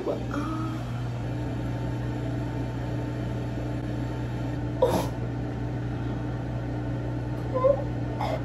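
Steady low mechanical hum of a small room, even throughout, with one short sharp sound about five seconds in and a brief, small high vocal noise near the end.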